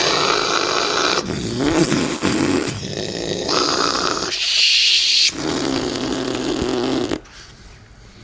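A man imitating a blowtorch flame with his mouth: a loud, rasping, hissing rush in about five long breaths that stops suddenly about seven seconds in.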